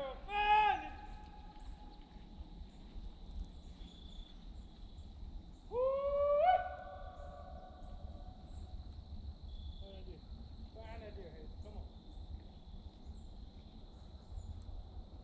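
Hunting hounds baying in the distance, running deer on a drive: drawn-out howling calls, one at the start, a longer one that rises and holds about six seconds in, and fainter ones around ten to eleven seconds.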